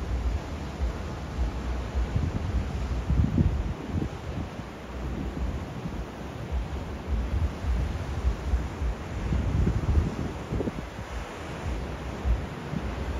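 Wind gusting on the microphone in irregular low rumbles, over the steady hiss of surf breaking on the shore below.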